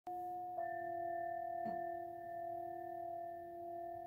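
Metal singing bowls struck twice, at the very start and again about half a second in, then ringing on in a few long, steady pure tones. A faint tap comes about a second and a half in.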